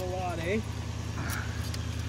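An engine idling steadily in the background, with a short spoken sound near the start and a few faint clicks in the middle.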